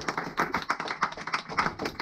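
A small audience clapping: quick, irregular hand claps from a few people.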